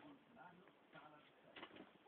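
Very faint background speech, with a few light clicks or rustles about one and a half seconds in.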